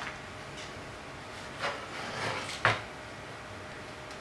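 Plastic Lite Brite board being handled on a desk: a few knocks and scrapes, the sharpest about two and a half seconds in.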